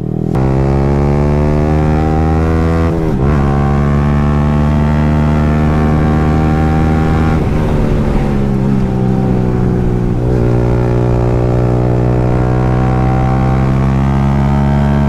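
Yamaha R15 single-cylinder engine with a full aftermarket exhaust system, running loud and deep-toned while the bike is ridden at a steady throttle. The engine note breaks briefly about three, seven and ten seconds in.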